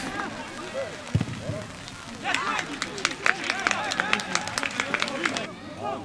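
Distant voices of players calling out across a football pitch, with a single low thud about a second in and a quick irregular run of sharp clicks from about two to five seconds in.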